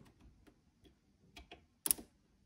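A few faint ticks, then one sharp click near the end as a metal test lead is pressed onto a battery terminal and makes contact.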